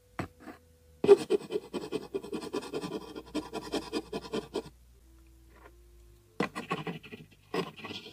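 A pencil writing, its lead scratching across the surface in quick strokes: one long burst of writing, a pause of nearly two seconds, then the writing starts again near the end.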